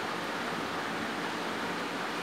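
Steady background hiss of room noise, even throughout, with no distinct clicks or knocks.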